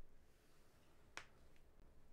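Near silence, broken by one short, faint click a little over a second in.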